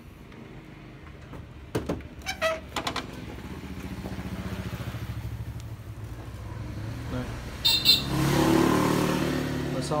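A road vehicle's engine passing close by. Its hum builds from about three seconds in and is loudest near the end. There are a few sharp clicks about two seconds in and a brief high burst about eight seconds in.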